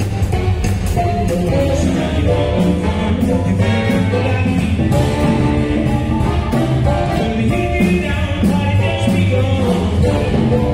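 A live band playing: saxophones, including a baritone sax, over electric guitar and a drum kit, with a steady beat.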